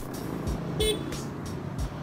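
Motor scooters running in street traffic, with one short horn toot just under a second in, over background music with a steady beat.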